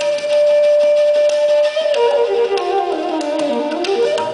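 Hindustani bansuri (bamboo flute) holding one long steady note, then sliding down in pitch and back up near the end, over a few sparse tabla strokes.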